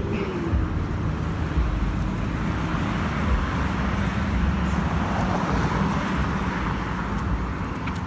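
Road traffic on a busy street: a steady rush of tyres and engines, with a vehicle passing that grows louder about halfway through, then fades.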